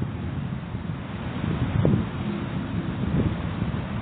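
Strong wind blowing over the microphone: a steady, low rushing noise with uneven gusts.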